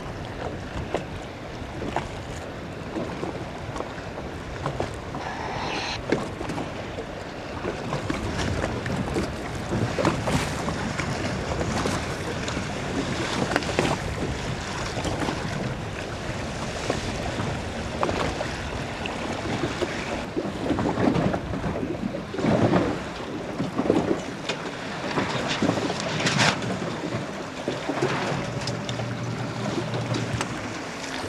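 Wind buffeting the microphone over choppy water, with irregular splashes and slaps of water and sailcloth around racing sailing dinghies.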